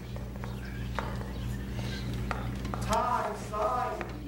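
Quiet sound track of a TV commercial: a steady low hum with scattered small clicks and taps, and a short stretch of a voice about three seconds in.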